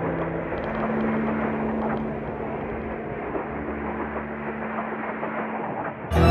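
A steady rumbling noise with a low hum held beneath it, dipping away just before the end.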